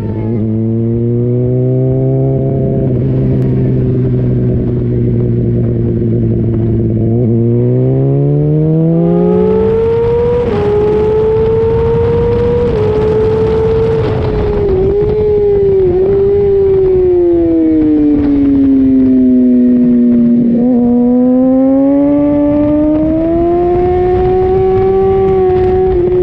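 2005 Honda CBR600RR's inline-four engine, heard from a camera on the bike: held at a steady low pitch at first, then rising as the bike accelerates, with a few quick breaks in pitch at the upshifts. Past halfway the pitch falls as it slows for a corner, then rises again near the end, under growing wind rush.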